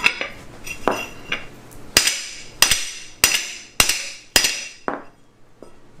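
Hammer blows on a steel go-kart chain sprocket lying on a concrete floor, straightening the bent sprocket. A few lighter taps come first, then six hard, evenly spaced strikes about two seconds in, each ringing metallically.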